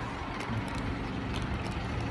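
Steady traffic and vehicle engine noise: an even hiss over a low hum, with a few faint ticks.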